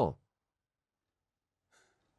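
The tail of a spoken word at the very start, then near silence, with a faint short breathy noise near the end.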